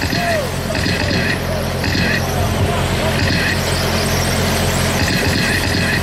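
Radio-controlled sprint cars racing around a small oval, their electric motors whining in repeated passes about half a second long each, over a steady low hum.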